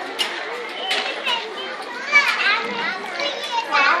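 Many children's voices shouting and chattering over one another, high-pitched, with a few sharp clicks among them.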